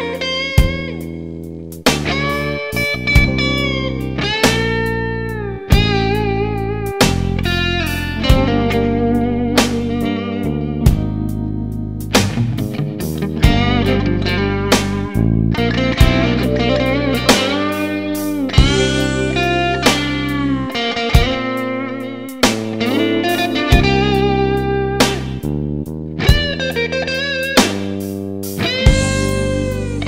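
Stratocaster-style electric guitar playing a blues lead, with notes bent upward and shaken with vibrato, over a backing of low bass notes and a beat that peaks about every two seconds.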